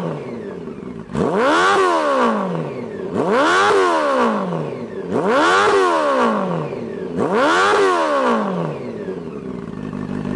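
Honda CB400 Super Four's inline-four engine, heard through an aftermarket megaphone muffler with its baffle removed, revved four times from idle, each rev rising and falling back, about two seconds apart, idling loudly between.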